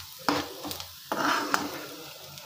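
A steel spoon stirring and scraping a frying masala around a nonstick pan, over a light sizzle. The spoon clacks sharply against the pan twice, about a quarter second in and about a second and a half in.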